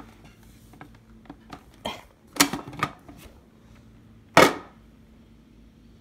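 Plastic parts of a food processor clicking and knocking as the lid and feed tube are handled and taken off the bowl, with a few clacks about two to three seconds in and one loud clack about four and a half seconds in.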